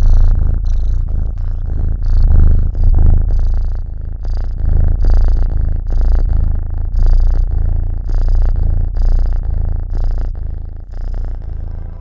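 Calico kitten purring: a continuous deep rumble that swells and eases about once a second.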